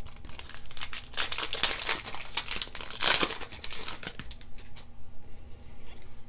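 Foil Pokémon trading-card booster pack wrapper crinkling and tearing as it is ripped open by hand, a dense run of crackles loudest about three seconds in.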